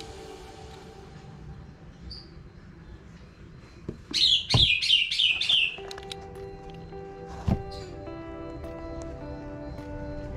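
A bird calling a quick run of six or seven falling chirps, about four seconds in. Soft background music with held notes follows, with a couple of faint knocks from handling.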